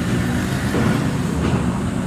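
Steady rumble of motor-vehicle traffic.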